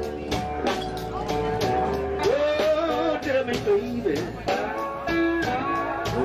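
Live blues band playing an instrumental passage: a lead guitar line with bent notes over bass and a steady drum beat.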